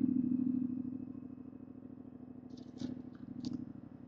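Yamaha MT-07's parallel-twin engine idling just after being started, a steady low running note that eases down over the first second or so and then holds at a settled idle.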